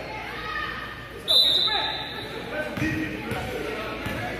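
A referee's whistle blows once, a short high blast about a second in, the loudest sound here, among voices in a large gym; a basketball bounces on the court floor near the end.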